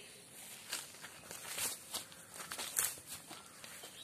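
Footsteps through low undergrowth and grass, with leaves and stems rustling against the walker, in soft, irregular steps.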